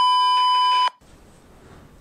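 A censor bleep edited over the audio: a single steady high-pitched beep lasting about a second, cutting off sharply, then faint room tone.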